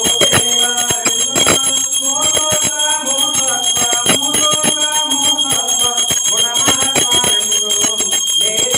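Brass puja hand bell rung steadily throughout, a continuous high ringing, with music going on alongside.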